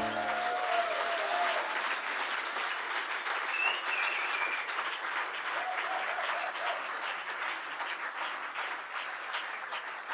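Live concert audience applauding, with a few cheers rising out of the clapping; the applause slowly fades. The last held chord's low tail dies away at the very start.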